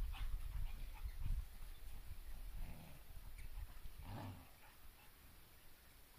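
An Irish Red and White Setter and an English Springer Spaniel play over a toy, with scuffling and one short dog vocal sound about four seconds in. A low rumble on the microphone fills the first two seconds.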